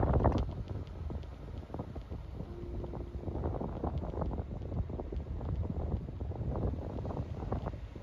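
Wind buffeting the microphone in gusts, over a steady low rumble of travel at road speed. A brief low hum sounds about a third of the way in.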